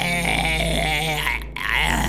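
A man making a long, drawn-out vocal noise with a wavering pitch instead of words. It breaks off briefly about one and a half seconds in, then starts again.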